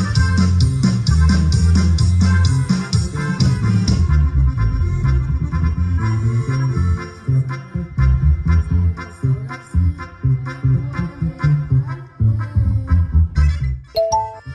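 Band music with keyboard over a steady, pulsing bass beat.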